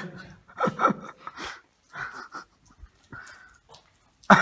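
People's short, breathy sounds: a few quick breaths and faint voice fragments, with gaps of near silence between them.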